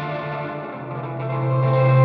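Epiphone Casino hollowbody electric guitar playing sustained, ringing chords. About halfway through it changes to a chord on a lower bass note that swells louder.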